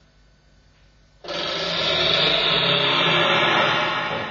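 Live experimental music: after a nearly silent pause, a dense, noisy sustained sound comes in suddenly about a second in, holds, and starts to fade near the end.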